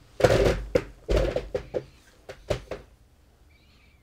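A run of short knocks and rustles with a few heavy low thuds, irregular, in the first three seconds: handling noise as someone reaches up to the camera.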